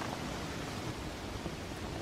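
Wood fire burning in a metal fire pit, giving a steady soft hiss.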